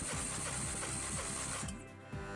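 Renault K7M 1.6-litre eight-valve engine being cranked over without firing for a compression test on the fourth cylinder, a rhythmic pulsing churn that stops near the end. The cylinder builds to 12 kg/cm².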